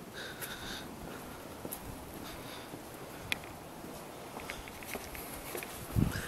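Steady wind noise with a few faint taps, typical of footsteps on a concrete driveway.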